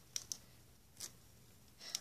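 Faint clicks of a small handmade paper card being handled and slipped back into its case: two sharp ticks close together near the start and another about a second in.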